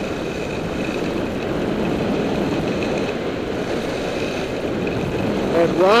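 Steady rush of wind on the microphone mixed with Völkl Kendo skis carving down a groomed run, the ski edges scraping on the snow.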